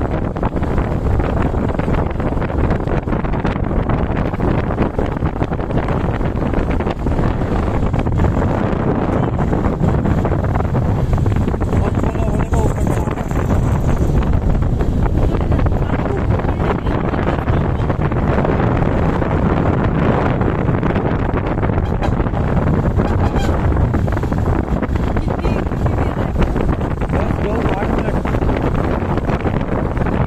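Wind buffeting the microphone of a motorcycle on the move, over the bike's engine and tyre noise. The noise is steady and even, with no distinct knocks or changes.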